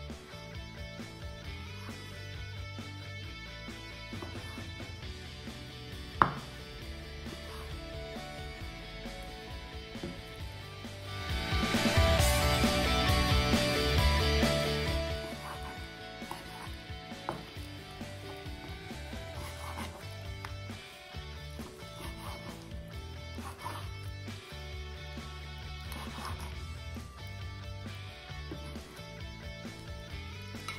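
Knife slicing raw chicken breast on a wooden cutting board, with occasional knocks of the blade on the board, over steady background guitar music. One sharp knock about six seconds in, and a louder noisy stretch of a few seconds about eleven seconds in.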